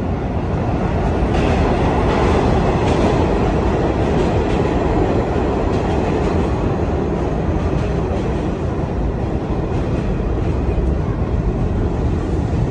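Subway train running through the station, a steady loud rumble with rattling.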